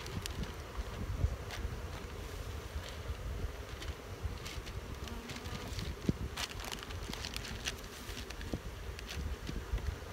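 Honey bees buzzing around open wooden hive boxes, a steady hum with a few short, light knocks of the wooden box being set and shifted into place.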